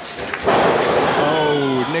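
A wrestling jawbreaker landing: both wrestlers dropping onto the ring mat with a loud slam about half a second in, the ring rumbling on for over a second after the impact.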